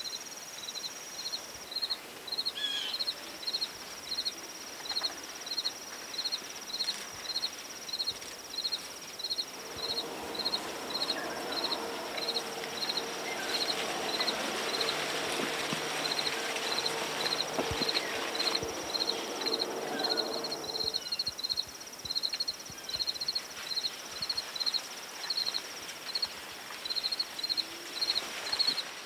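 Crickets chirping in a steady rhythm of about two chirps a second, over a continuous high insect trill. A low steady hum comes in about ten seconds in and fades out about twenty seconds in.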